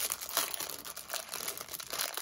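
Packaging crinkling and rustling in the hands, in short, irregular crackles.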